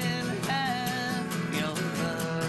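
A man singing a country-style song over a strummed guitar with a steady rhythm, holding one sung note from about half a second in.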